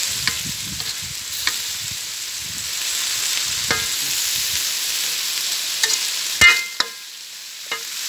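A meat and basil stir-fry sizzling in a large metal wok while a metal spatula stirs it, with scattered clicks of the spatula on the pan. The loudest is a ringing clank about six and a half seconds in.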